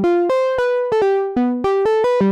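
Korg Monologue monophonic analogue synthesizer playing a quick melodic line on its keyboard, one note at a time, about four notes a second, each note bright with overtones.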